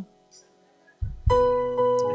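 A near-silent pause, then the church band comes in with a held chord of plucked-string or keyboard sound about a second in. It is struck again just after and rings on, slowly fading.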